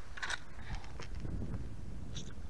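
Faint handling noises: a few soft clicks and rustles over a low steady rumble, as a caught bass is hooked onto a hand-held digital scale in a small boat.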